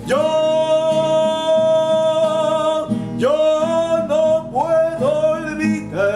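A man singing long held notes to his own classical guitar accompaniment: one note held for about three seconds, then a second held note followed by shorter ones, over plucked and strummed guitar.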